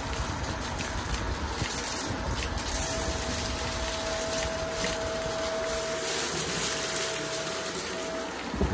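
Shark DuoClean upright vacuum running over carpet, its brushroll sucking up confetti and glitter with scattered crunching clicks. A steady whine joins the motor noise about three seconds in.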